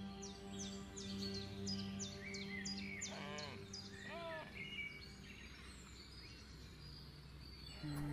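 Soft background music of sustained held tones, fading out about halfway through, under outdoor ambience of birds chirping: a run of quick, high, falling chirps, then a few warbling calls in the middle.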